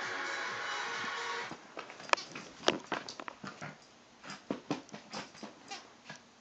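TV show music and audience sound for about the first second and a half, then it drops away, leaving scattered sharp clicks and taps from a small pet playing with its toys on the floor.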